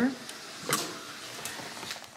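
A single short knock or click about two-thirds of a second in, over faint room noise.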